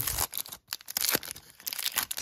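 Plastic-foil wrapper of a 2021 Topps Stadium Club baseball card pack being torn open by hand, ripping and crinkling in irregular crackles with a short lull partway through.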